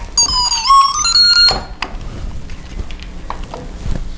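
A short electronic melody of a few beeping notes, stepping upward over about a second and a half, from the built-in music chip of a plugged-in Christmas LED light string. It stops abruptly, followed by faint handling clicks.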